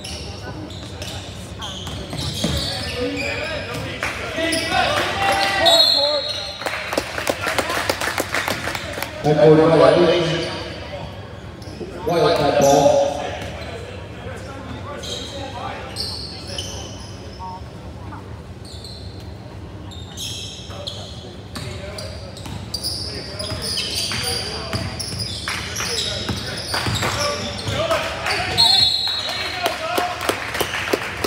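A basketball dribbling and bouncing on a hardwood gym floor during play, echoing in a large hall. Voices call out over it, loudest in two bursts about ten and twelve seconds in.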